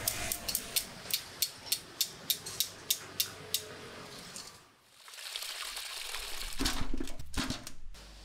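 A wire-mesh frying strainer full of fried sesame balls is shaken over a wok of oil. It ticks in light metal clicks about three times a second for the first few seconds. After a brief lull, a steady hiss of frying oil follows, with a few dull thumps near the end.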